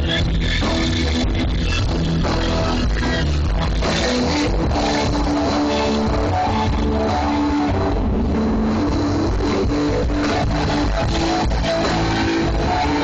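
Loud rock music with electric guitar, bass and drums playing without a break, with some singing.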